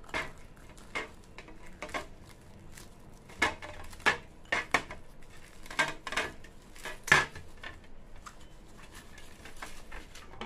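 Plastic wrapping crinkling as it is peeled off a ceramic bowl, with irregular sharp clicks and clinks of the ceramic against a clear tray, about a dozen in all. The loudest comes about seven seconds in.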